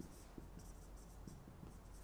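Faint whiteboard marker strokes as a word is written on a whiteboard.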